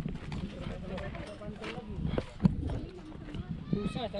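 Footsteps on a concrete bridge deck, a string of short knocks with one sharper one about halfway through, under faint voices.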